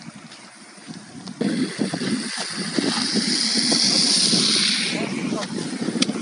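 Outdoor road noise that starts abruptly about a second and a half in: wind buffeting the microphone over a swelling hiss of tyres on wet slush as a vehicle passes, loudest about four seconds in and fading soon after.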